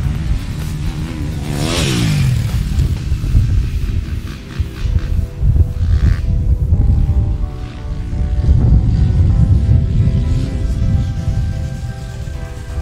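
A KTM 250 motocross bike's engine revving hard on the track, its note falling steeply about two seconds in, under background music. The music comes through more clearly in the second half.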